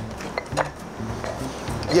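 Background music with a steady low bass line, under a few light knife taps on a plastic cutting board and small utensil clinks.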